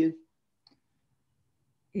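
Near silence between two speakers' turns on a video call, broken only by one faint click about two-thirds of a second in. A woman's voice ends a word at the start and another voice begins just before the end.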